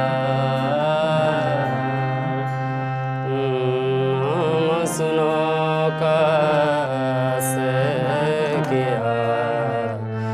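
Live Indian devotional bhajan: a singing voice over the sustained reeds of a harmonium, with tabla accompaniment. Two brief bright metallic clinks come about halfway through and again later on.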